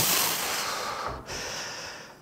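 A man breathing hard with forceful exhalations while straining through leg-extension repetitions: one long rush of breath, then a shorter one about halfway through, fading.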